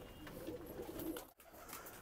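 Domestic pigeons cooing faintly; the sound cuts off suddenly a little after a second in.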